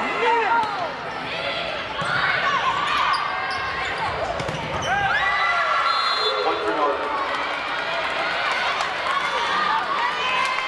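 Indoor volleyball rally on a hardwood court: the ball is served and struck, sneakers squeak on the floor, and players call out to each other.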